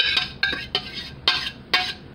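A metal utensil scraping and knocking against the inside of a stainless steel saucepan in about five short, quick strokes, scraping out the last of the cheese sauce.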